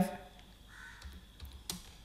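A few faint computer keyboard keystrokes as a number is typed in and entered.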